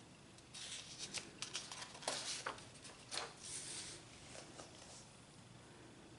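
Sheets of drawing paper rustling and sliding against each other as one is lifted away, in a string of short scrapes from about half a second in until about five seconds in.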